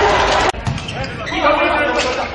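Volleyball arena sound in a large hall: voices over the hall and crowd, with a sharp knock about half a second in, such as a volleyball being struck during a rally.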